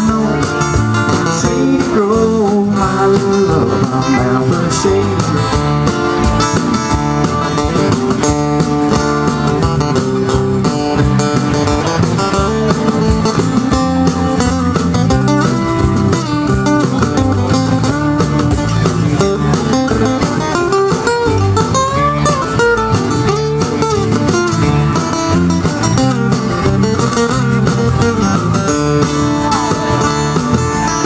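Live band playing an instrumental passage with no vocals: acoustic guitars over electric bass and drum kit, with a guitar carrying a melodic lead line.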